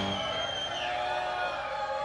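The last chord of a live rock band fading away after the song's final hit, with a little crowd cheering and whooping.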